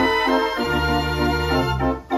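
Dutch street organ (draaiorgel) 'De Willem Parel' playing a tune: sustained pipe chords over long-held bass notes.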